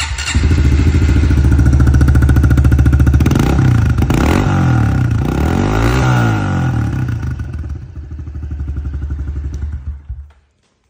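Honda CRF110F's small single-cylinder four-stroke engine running on its stock exhaust: a steady idle, then the throttle blipped up and down a few times in the middle, then settling back to idle.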